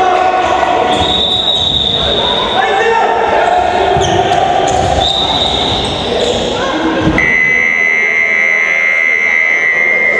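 Indoor handball match in a reverberant sports hall: players' voices and the ball bouncing on the floor, with short high whistle-like tones about a second long near the start and middle. About seven seconds in, a long steady high tone begins and holds.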